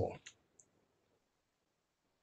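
A man's voice trails off, followed by two faint, short clicks within the first second, typical of a computer mouse being clicked to advance a presentation slide; then near silence.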